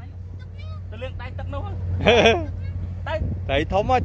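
A motor drones steadily and low under men's shouting voices, the loudest call about two seconds in.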